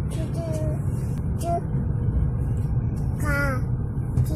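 Steady low rumble of a moving car heard from inside the cabin, with a few short vocal sounds from a person's voice, the longest and highest a little after three seconds.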